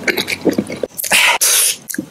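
Close-miked wet mouth clicks and lip smacks, then about a second in a loud, sharp burst of breath from the mouth and nose lasting under a second, ending in a hiss.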